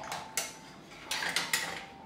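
Kitchen handling sounds: a cotton cloth rustling and a stainless steel strainer shifting against a pot as the strained milk curds are covered. There is a short burst about a third of a second in, then a longer one past the middle.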